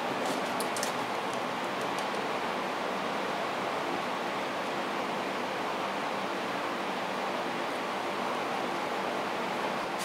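A steady, even hiss of background noise, with a few faint clicks in the first second.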